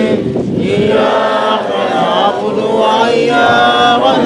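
A group of voices chanting together in unison, unbroken through the whole stretch.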